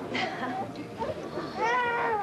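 A baby crying in high wavering wails over background party chatter, the cry swelling near the end.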